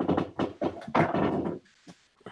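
A quick run of knocks, clicks and rustles as a headset is pulled off and handled close to the microphone, then a single click near the end.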